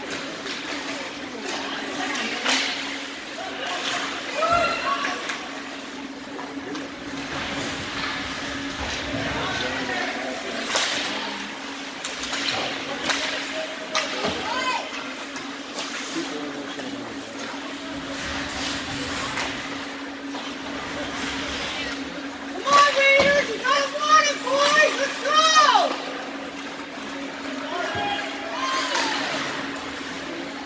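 Ice hockey rink sound during play: skate blades scraping the ice and sharp clacks of sticks on the puck over a steady low hum. Spectators shout loudly for a few seconds about three quarters of the way through.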